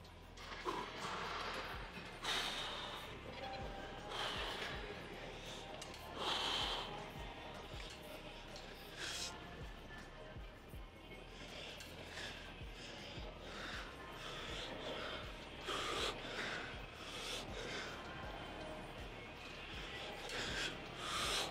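A man taking forceful breaths with each rep of a cable lat pulldown, short sharp breaths every one to three seconds. Background music plays under them.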